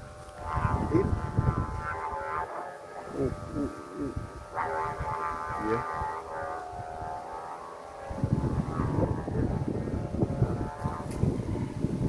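Gusting wind buffeting the microphone in low rumbles, easing off in the middle and returning strongly about eight seconds in, over a steady hum made of several even tones.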